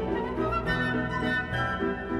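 Orchestra playing an instrumental passage of a waltz with no singing: a high melody line over held chords.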